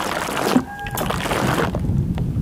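Water sprayed from a hand-held bottle onto a plastic-wrapped microphone to imitate rain: bursts of hissing spatter. Near the end a low rumble takes over.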